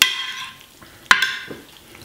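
A metal spoon clinking twice against a ceramic baking dish while stirring pasta, once at the start and again about a second in, each clink ringing briefly.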